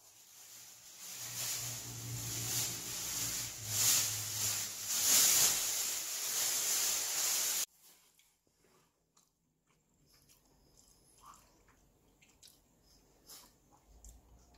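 Plastic wrapping on a baby safety gate crinkling and rustling as it is handled, getting louder, for about seven and a half seconds, then cutting off abruptly to a quiet room with a few faint clicks.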